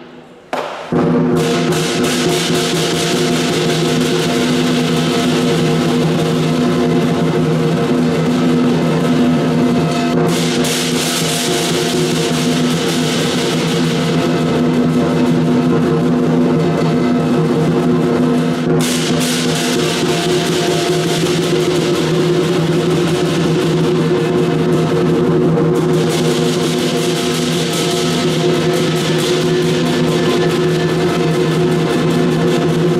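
Lion dance percussion band playing continuously: a large lion drum beaten under ringing gong and clashing cymbals. It resumes after a short break about a second in. The bright cymbal layer drops out briefly a few times.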